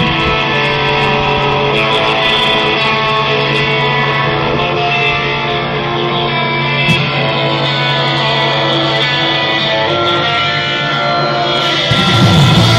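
Live rock band's guitar playing long, ringing notes over a held low note, the opening of a song, with no singing.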